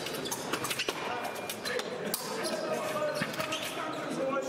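Fencing hall ambience: scattered sharp clicks and knocks with voices talking in the background, all carrying the echo of a large hall.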